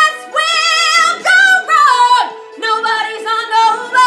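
A woman belting a musical-theatre song: several loud sung phrases with short breaks between them, and wide vibrato on the held notes.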